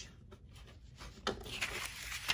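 Scissors cutting a paper worksheet and the sheet being handled: a faint click about a second in, then a soft papery rustle.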